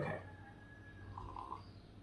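A faint sip of coffee from a ceramic mug, a short soft sound a little over a second in.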